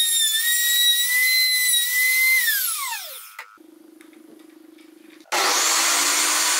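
Compact trim router running at speed with a steady high whine, switched off about two and a half seconds in and winding down over about a second. After a short quiet stretch, a benchtop table saw starts up near the end, its motor coming quickly up to speed.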